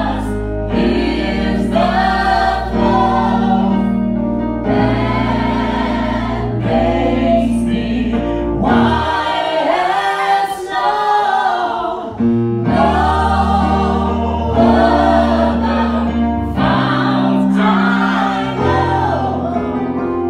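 Gospel worship song: a small group of male and female vocalists singing together over sustained keyboard chords. The low chords drop out for a few seconds near the middle while the voices carry on.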